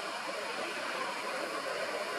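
Steady rush of distant road traffic: an even background noise with no distinct events.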